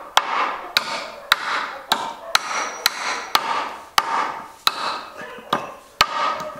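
Machete chopping off the protruding end of a wooden wedge driven into a hoe's eye, trimming the wedge that holds the handle tight. Sharp wooden knocks, about two a second, a dozen strokes in all.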